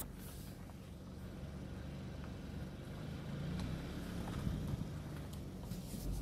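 A car engine running at low revs: a faint, steady low hum.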